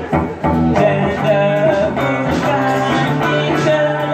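Live rock-blues song: electric guitar chords played through an amplifier with a woman singing over them.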